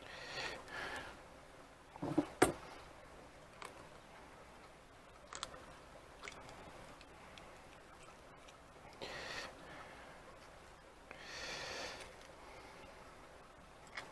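An egg cracked against the rim of a stainless steel bowl, one sharp crack about two seconds in, followed by a few faint clicks of shell as the yolk is passed between the shell halves. Three soft breaths are heard in between.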